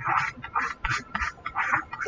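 Stylus scratching on a pen tablet as a word is handwritten: a quick run of short scratchy strokes, about four a second.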